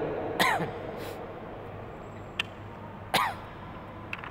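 A man clearing his throat twice, about three seconds apart, through a handheld microphone. Each is short and sharp, with a voiced tail that falls in pitch.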